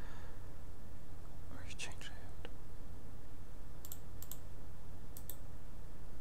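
A few soft computer-mouse clicks: two single clicks about four seconds in, then a quick double click a second later, over a steady low hum of the recording microphone. A faint brief rustle or breath comes about two seconds in.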